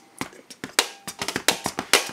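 Finger drumming: a quick, uneven run of hand taps on the padded edge of a mixing console, mixed with hi-hat sounds made with the mouth.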